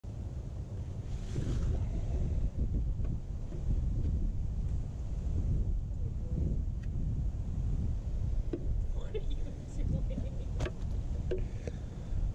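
Wind buffeting the microphone: a steady low rumble, with a few scattered light clicks.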